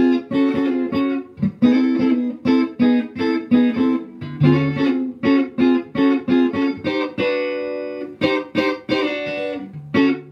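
Clean electric guitar (Stratocaster-style) playing an old-school swing shuffle with short three-note triad stabs, about two or three a second, instead of full chords, with a longer held chord about seven seconds in and a few low notes in between.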